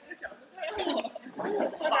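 Indistinct, muffled speech: a voice mumbling or talking low, starting about half a second in after a brief lull.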